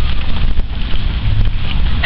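Wind buffeting the microphone: a steady low rumble under an even outdoor hiss.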